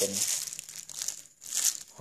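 A clear plastic bag full of coins crinkling as it is picked up and handled. The crinkling comes in two bursts, one at the start and a louder one about a second and a half in.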